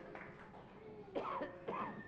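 A person coughing twice, faintly, the coughs half a second apart a little past a second in, over quiet room tone.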